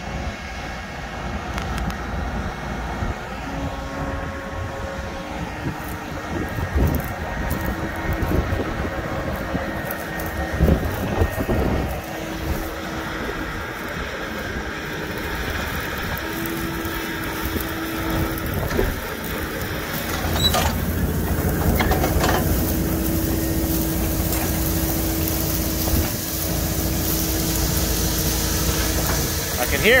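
Tractor pulling a Bourgault air drill and air cart into the ground: a steady engine and fan hum with wind buffeting the microphone, and a deeper rumble building about two-thirds of the way through as the drill works the soil.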